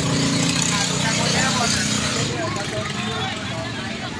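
Street background noise: a steady motor hum, fading after about two seconds, with indistinct voices in the background.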